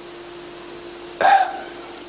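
A man's short hiccup-like vocal sound about a second in, over a steady faint hum.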